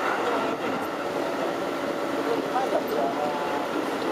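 Keikyu 2100-series electric train running along the track, heard from inside the front car as a steady running noise, with people's voices faintly mixed in after about two and a half seconds.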